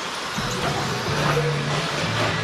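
Several electric RC trucks running around the track, heard as a steady mix of motor and tyre noise over the hall's background noise.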